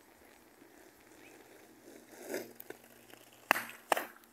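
Small plastic skateboard knocking on an asphalt path: two sharp clacks near the end, after a short scraping swell about two seconds in.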